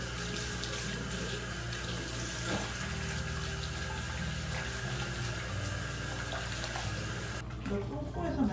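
Bathroom sink mixer tap running, water splashing into a white ceramic basin while a cat is washed in it; the tap is shut off and the flow stops abruptly about seven seconds in.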